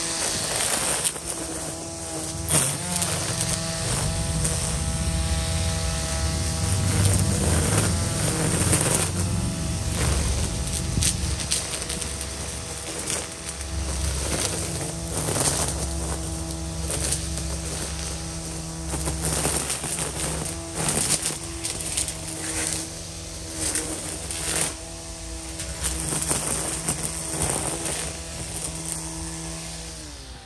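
EGO Power+ battery string trimmer running with a steady electric whine, its nylon line cutting through weeds with many sharp ticks and cracks. The pitch sags now and then under load.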